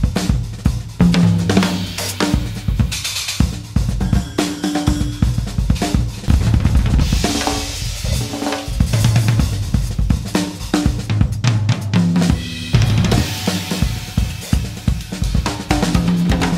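Solo jazz drum kit played freely, with busy snare and tom figures over bass drum and hi-hat. Cymbal washes swell up twice, about halfway through and again near the end.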